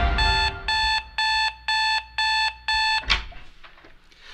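Mobile phone alarm beeping: six even, high electronic beeps about two a second, which stop suddenly about three seconds in, followed by a short swish.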